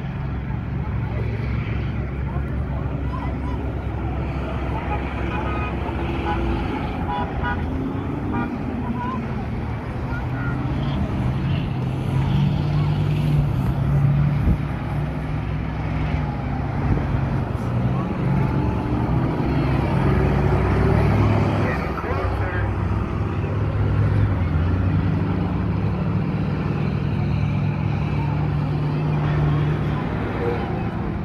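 Engines of several school buses racing around a speedway track, a steady drone that swells and fades as the buses pass. Crowd voices are mixed in.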